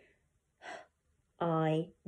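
A woman's voice sounding out separate phonics sounds: a short breathy "h", then a held "i" (the long i-e vowel).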